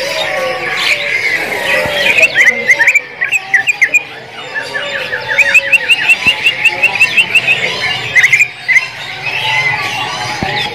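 Greater green leafbird (cucak ijo) singing in a cage, in loud runs of quick, sharp repeated chirps at about six to eight notes a second, about two seconds in and again for a longer stretch from about five seconds, with other cage birds calling behind.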